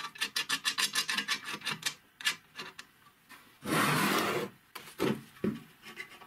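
A steel nut spun by hand along a threaded bolt: a fast run of small metallic clicks in the first two seconds and a few more after. About halfway through comes a rough scraping rub lasting about a second, followed by a few light knocks.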